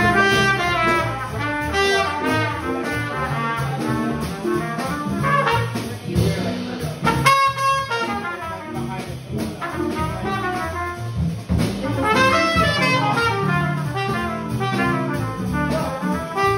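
Trumpet playing a jazz line live with a small band behind it.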